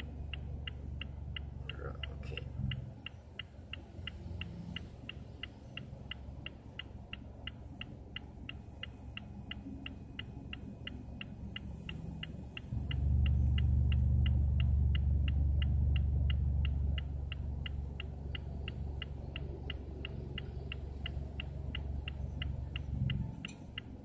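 A car's indicator ticking steadily in the cabin, about three ticks a second. A low rumble of the car runs underneath and grows louder for about four seconds past the middle.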